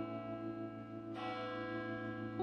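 A large bronze church bell in the Ghirlandina tower rings and fades, then is struck again about a second in.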